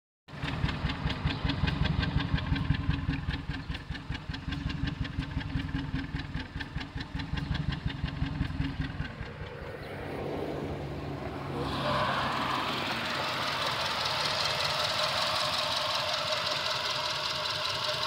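Hyundai Veloster's GDi four-cylinder engine idling roughly, first heard at the exhaust tips as a low, uneven pulsing with irregular dips, then from the engine bay as a steadier, brighter running. The engine is bucking, which the owner thinks may be a misfire.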